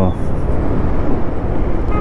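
Bajaj Pulsar 150 motorcycle's single-cylinder engine running while riding along a town street, mixed with wind rumble, a steady, loud low noise.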